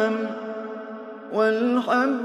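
A man chanting Quranic recitation in the melodic tajwid style. A long held note trails off with echo, and about a second and a half in a new phrase begins, its pitch rising.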